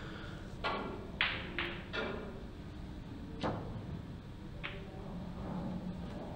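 Pool balls clicking as a shot is played: the cue tip striking the cue ball, then sharp knocks of the balls hitting one another, about six faint clicks spread over four seconds.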